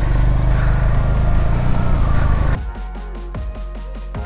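Motorcycle running as it rides off, then about two and a half seconds in the sound cuts abruptly to electronic music with a steady beat.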